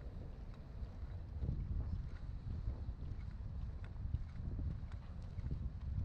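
Wind buffeting a body-worn camera's microphone, a gusty low rumble, with faint footsteps ticking on the pier deck.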